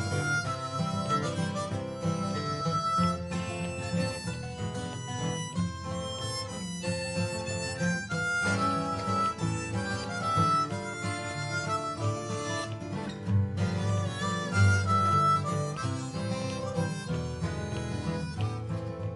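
A harmonica playing a melody with held, bending notes over three acoustic guitars playing a chordal accompaniment.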